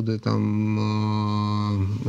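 A man's drawn-out hesitation sound, a steady "eeh" held at one low pitch for about a second and a half, as he pauses mid-sentence searching for the next word.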